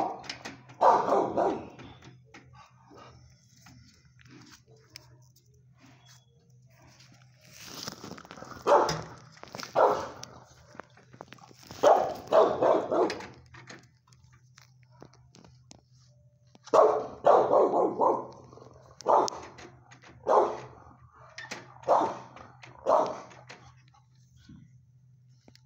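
Dog barking in several bouts separated by pauses of a few seconds, ending in a string of single barks near the end, heard through a kennel's glass window over a steady low hum.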